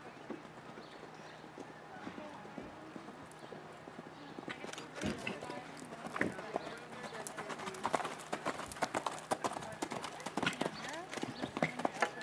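Hoofbeats of a horse cantering on sand arena footing. They grow louder and sharper from about halfway through as the horse comes closer.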